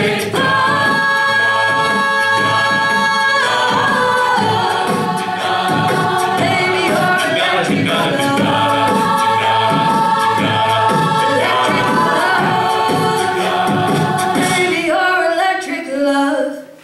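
Mixed a cappella group singing a pop song: a female soloist on microphone over sustained backing-vocal chords, with a sung bass line and beatboxed percussion keeping a steady beat.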